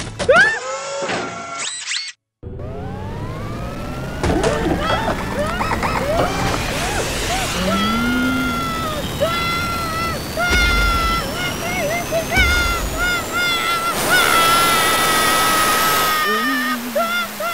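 Cartoon soundtrack: excited vocal exclamations at first, then, after a moment of silence, one long whistle-like tone rising slowly in pitch for over ten seconds, over music with a held note and short repeated notes.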